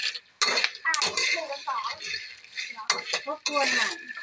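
A metal spoon stirs and scrapes kabok (wild almond) seeds as they dry-roast in a pan. The hard seeds clatter against the pan and each other in repeated strokes.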